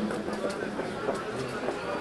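Murmur of a large outdoor crowd talking among themselves, with scattered light knocks.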